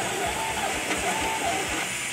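Monoprice 3D printer running loudly, its stepper motors making a harsh, hissing whine with wavering pitched tones.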